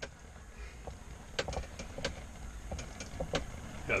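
Ice-fishing spinning reel handled and cranked as a fish is brought up the hole, with scattered light clicks over a low steady hum.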